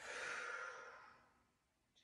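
A woman's long audible exhale, a breathy rush that fades away over about a second and a half: the exhale cued for cat pose in a cat-cow sequence.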